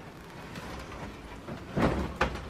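Clothes being handled at a wardrobe: quiet fabric rustling, then a brief, louder burst of handling noise near the end as clothes are pulled down.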